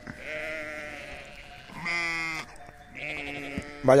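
Sheep bleating: a few short bleats, the loudest about two seconds in and a higher-pitched one about a second later.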